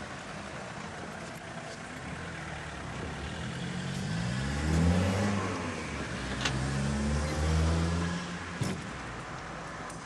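A car engine passing close by, rising in pitch and getting louder a few seconds in, then holding steady before easing off near the end. Two short sharp clicks in the second half.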